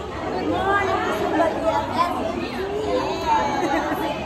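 A crowd of people chatting at once, many voices overlapping with no single speaker standing out.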